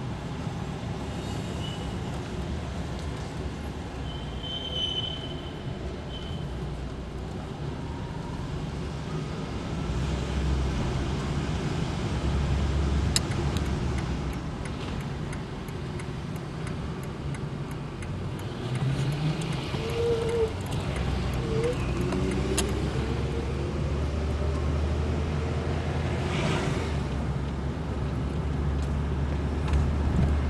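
A 1977 Plymouth Fury's engine idling steadily as a low hum, with the car standing still.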